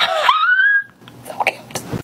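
A woman's high squealing laugh, rising in pitch and held for most of a second, followed by a few soft clicks and rustles.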